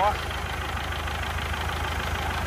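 Isuzu 4KH1 four-cylinder turbodiesel idling steadily, throttled down to a low idle.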